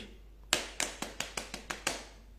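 About eight quick, sharp hand taps or slaps, starting about half a second in and coming closer together.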